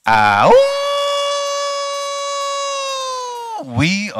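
A man's long wordless yell into a handheld microphone: it sweeps up in pitch, then holds one high note for about three seconds before breaking off.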